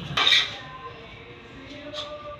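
A brief metallic clatter about a quarter second in, from aluminum window-frame parts being knocked and handled.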